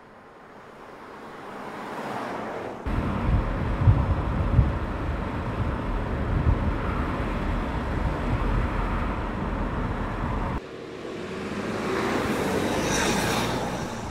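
An Audi A8 saloon driving by on an open road: engine and tyre noise rising as it approaches over the first few seconds, then cutting abruptly to a louder, closer rumble with a few brief peaks, which cuts off abruptly near the end of the first ten seconds before another pass-by swells and fades.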